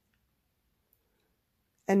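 Near silence: room tone with a faint, brief click about a second in, then a woman's voice starts again at the very end.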